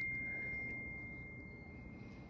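A high, bell-like chime tone rings on as one steady pitch and slowly fades away.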